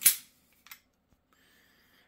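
A sharp metallic click from a semi-automatic pistol's action as it is handled for takedown, with a short ring after it, then a much fainter click about two-thirds of a second later.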